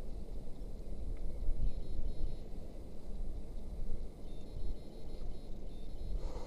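Wind buffeting the action camera's microphone: a low, uneven rumble that gusts up and down.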